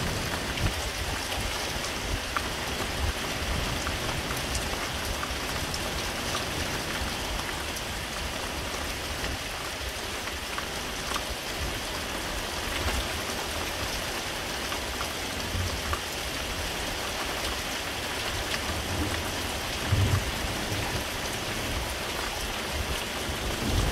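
Steady rain from a thunderstorm squall: an even hiss with scattered drop ticks and a brief low thump about 20 seconds in.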